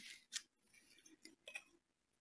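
Near silence with a few faint clicks: one about a third of a second in and a couple more around one and a half seconds, as small painting tools are handled on the work table.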